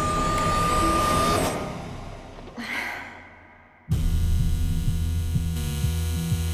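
A low, noisy drone with a steady high tone fades away almost to silence. Then, about four seconds in, a loud, steady electric buzz cuts in suddenly: an apartment intercom buzzer sounding.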